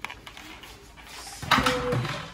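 Kitchen handling sounds: faint rustling, then about one and a half seconds in a short, louder clatter with a brief ring.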